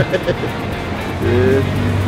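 A man's voice, a short sound at the start and then a drawn-out exclamation, over background music and a steady low rumble of street traffic.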